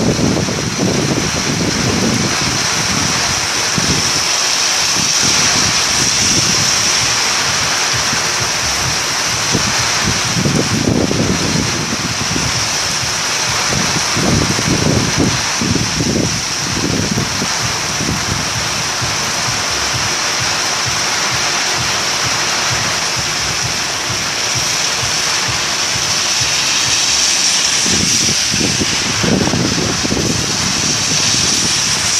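Heavy rain pouring down on a flooded street, a loud steady hiss. Low rumbling surges come and go as vehicles drive through the standing water.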